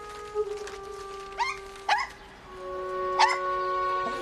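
A small dog barking three times: two quick short barks about a second and a half in, a third about a second later, over sustained background music.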